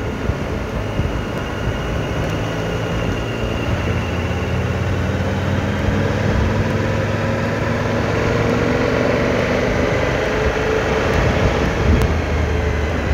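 Motorcycle engine running under way, its pitch rising slowly through the middle of the stretch as the bike gathers speed, over a steady rush of wind and road noise.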